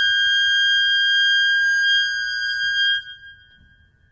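A single very high woodwind note held steady for about three seconds, then fading away to faint room hum.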